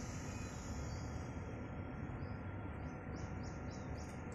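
Quiet outdoor background noise, and from about three seconds in a rapid run of short high chirps, about five a second, from a small animal.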